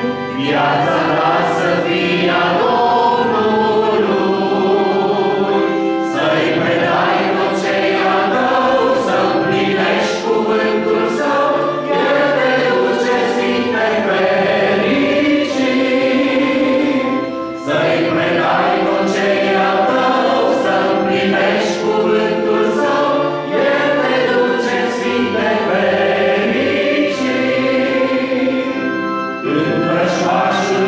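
Congregation singing a hymn together, many mixed voices in unison. The singing runs in long phrases with brief dips between the lines.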